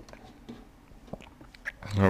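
A quiet pause with low room tone and a few faint short clicks, about half a second, a second and a second and a half in. A man's voice starts right at the end.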